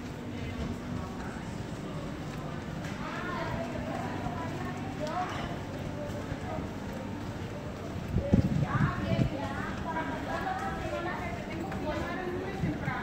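People talking as they pass in the street, with rhythmic footsteps on the brick paving. A few louder low thumps come about eight seconds in.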